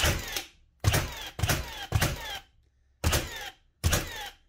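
Milwaukee M18 Fuel brushless cordless 30-degree framing nailer firing nails into a wooden stud in triple-shot mode with the trigger held down: six sharp shots in quick succession, each followed by a short falling whine.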